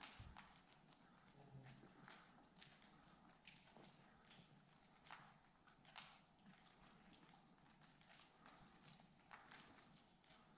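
Near silence with faint, irregular footsteps and small taps and knocks on the floor of a large empty hall.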